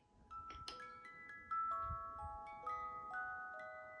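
Small wind-up music box playing a slow melody, its comb notes ringing on and overlapping, after a few soft clicks as it starts.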